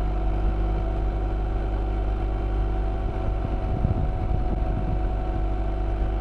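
BMW R1200 GS Adventure's boxer-twin engine running steadily at a constant cruising speed, with wind noise on the microphone. The wind rumble gets gustier about halfway through.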